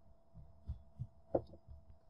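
A few soft, low thumps close to the microphone, the loudest about two thirds of the way through: handling noise as a hand works near the face and headset microphone. A faint steady hum runs underneath.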